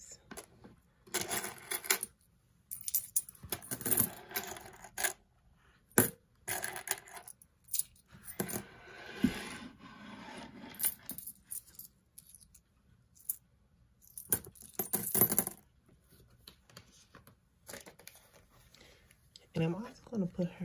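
Loose coins dropped by hand into a fabric zippered pouch already full of change, clinking against the coins inside in a series of separate handfuls, with a softer shuffling of coins about halfway through.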